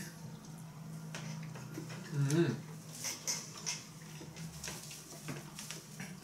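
People chewing pizza: soft, scattered mouth and chewing clicks over a steady low hum, with a short voiced 'mm' about two seconds in.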